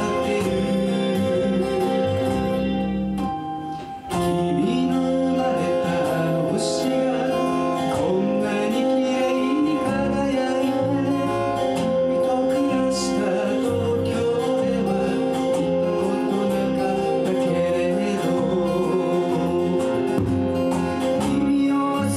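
A live band playing a song: strummed acoustic guitars over electric bass, with singing. The music dips briefly about three to four seconds in, then comes back in at full level.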